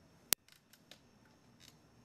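Small metal magic cups being handled on a table: one sharp click about a third of a second in, then a few faint ticks and taps.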